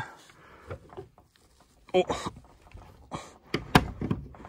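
Old rusty padlock on an iron door hasp being handled and worked open: a few light metal clicks and rattles, the sharpest click near the end.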